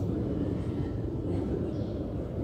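A steady low rumble of background noise in a large crowded prayer hall, with no voice or call to prayer.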